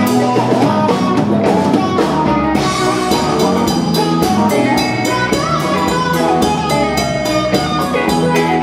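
Live rock band playing an instrumental passage: electric and acoustic guitars and bass over a drum kit keeping a steady beat.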